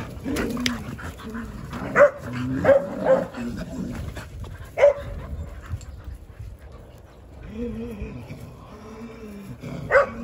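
Dogs barking and yipping in short, sharp bursts, several of them in the first five seconds, during a rough scuffle between the dogs. Quieter pitched whining-type sounds follow near the end.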